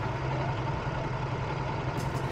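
Rental kart engines idling steadily on the starting grid, a low constant hum while waiting for the green light.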